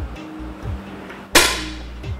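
A single air-rifle shot, one sharp crack with a short ring-out, a little past halfway through, over background music with a steady beat.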